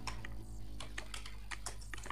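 Computer keyboard typing: a quick run of keystroke clicks over a steady low hum.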